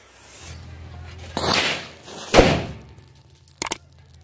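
Diwali firecrackers set off by a burning matchstick chain: a half-second hissing burst about a second and a half in, then a single sharp bang a second later.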